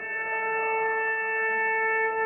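Basketball arena scoreboard horn sounding one steady, unwavering buzz that starts abruptly.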